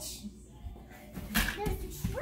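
A small child's voice: a short vocal sound with a sharp onset about one and a half seconds in, over faint room noise.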